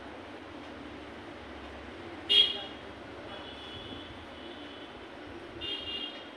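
Steady background noise with a short, loud high-pitched beep about two and a half seconds in, followed by fainter beeps of the same pitch later on.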